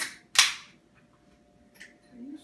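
Two sharp bangs about half a second apart, the second louder and dying away quickly.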